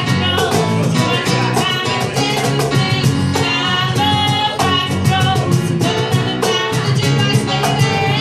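Live band playing with two singers: vocals over a Yamaha keyboard, cajon and electric bass, with a steady beat.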